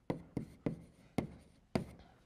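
Chalk writing on a blackboard: about five sharp taps of the chalk against the board, unevenly spaced, as a formula is written.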